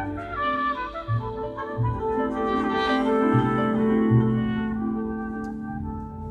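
Live small jazz band playing an instrumental passage: a trumpet carries the melody over upright bass and keyboard, the bass plucking separate low notes beneath a long held note in the second half.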